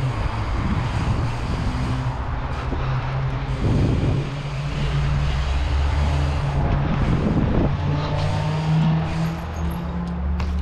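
Bike tyres rolling over asphalt and concrete skatepark ramps, a steady rumble with a low hum, rising in two brief louder rushes about four and seven and a half seconds in.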